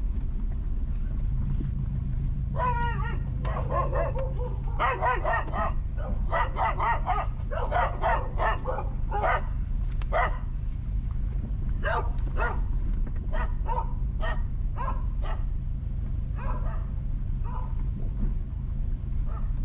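A dog barking repeatedly in a long run of short barks, starting a few seconds in and going on until near the end, over the steady low rumble of the car driving along.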